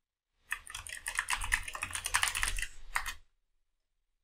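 Typing on a computer keyboard: a quick run of keystrokes that starts about half a second in and stops a little after three seconds.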